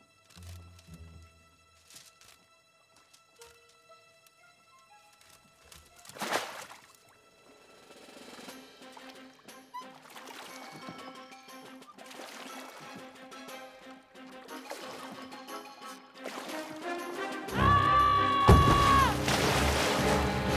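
Water splashing and sloshing under a quiet film score: one loud splash about six seconds in, then a stretch of sloshing and dripping. The music swells loudly near the end.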